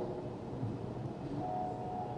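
Low, steady background noise of a large hall. A faint, steady high tone comes in about two-thirds of the way through.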